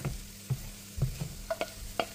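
Chopped onions and garlic sizzling in oil in a nonstick frying pan while a wooden spoon stirs them, knocking against the pan a few times about half a second apart.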